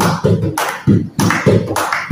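Several people clapping hands together in a steady rhythm, about three claps a second.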